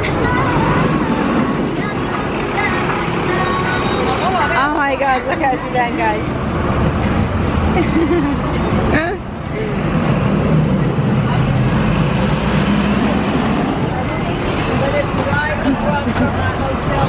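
Busy city street: steady traffic noise from passing vehicles, including a bus, with people talking in the background.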